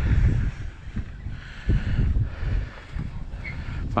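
Wind buffeting the microphone: a low rumble in gusts, strongest near the start and again about two seconds in.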